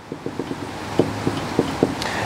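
Whiteboard marker drawing a row of short strokes on the board: about a dozen quick taps and scratches of the pen tip.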